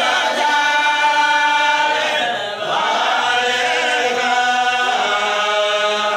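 A group of voices singing in unison on long held notes, the phrase breaking briefly about two and a half seconds in.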